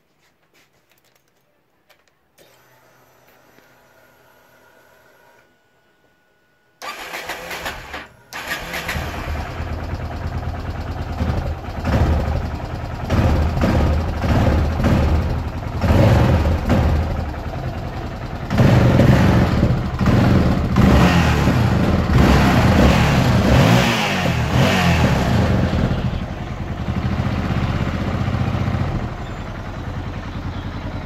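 Yamaha XT 660R's fuel-injected single-cylinder engine with a freshly replaced fuel pump. After the ignition is switched on, the pump hums faintly for about three seconds while priming. The engine then starts about seven seconds in, falters briefly a second later and runs on, revved up and down repeatedly.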